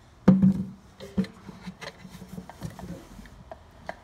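Paulownia (kiri) wood tansu drawer being handled and slid back into the chest: a wooden knock, a second smaller knock, then wood rubbing on wood with small clicks.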